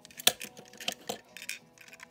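Die-cast toy tow trucks clicking and clinking as they are handled and knocked together: a few sharp clicks, the loudest about a quarter second in, over quiet background music.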